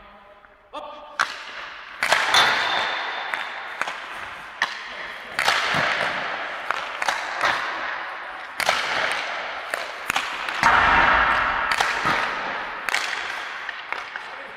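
Ice hockey sticks striking pucks in repeated shots from a standing position: a dozen or so sharp cracks and knocks, roughly one a second, each echoing in a large ice arena.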